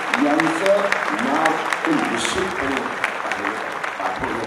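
Audience applauding, a dense patter of many hands clapping, with a voice speaking over it.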